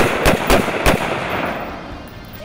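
AR-style rifles fired in quick succession on an outdoor range: three or four sharp shots in the first second, about a third of a second apart, then the report and echo die away.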